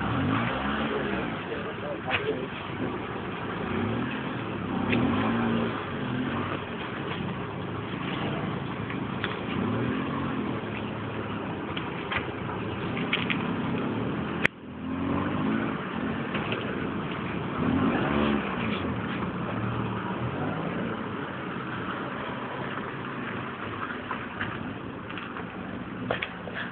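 A police car's engine running close by, headlights on, with indistinct voices talking in the background. There is a single sharp knock about halfway through.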